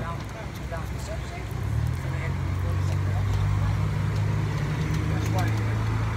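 A motor vehicle's engine running close by: a low, steady hum that grows louder about a second and a half in and then holds. Faint voices and a few light clicks sit over it.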